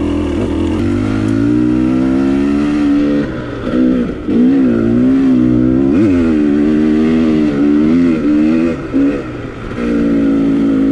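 2019 KTM 300 XC-W TPI two-stroke dirt bike engine under way, the revs rising and falling steadily with the throttle. The rider backs off briefly a little after three seconds and again near nine, and there is one quick sharp blip of the throttle about six seconds in.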